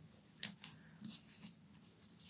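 Faint rustling and crinkling of a satin ribbon against a metallic-paper card as it is tied into a bow, in a few short rustles.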